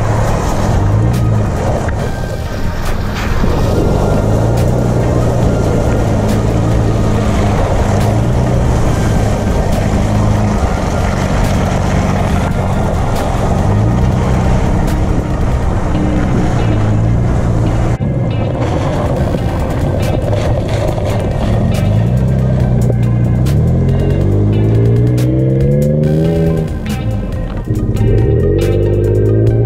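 A 2016 Toyota 4Runner's 4.0-litre V6 running through a Gibson performance exhaust while driving a wet, muddy trail, with tyre and water noise. Near the end the engine pulls up through its revs and drops back.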